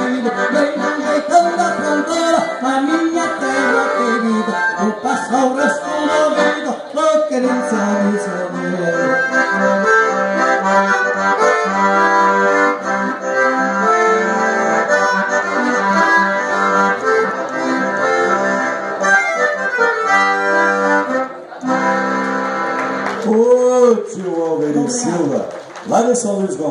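Diatonic button accordion (gaita ponto) playing a lively instrumental passage of a gaúcho song. The playing dips briefly near the end and a voice is heard over it.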